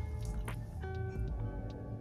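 Background music with held, steady notes over a low bass.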